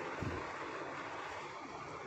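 Steady background noise, an even hiss with no speech, with a faint low thump about a quarter second in.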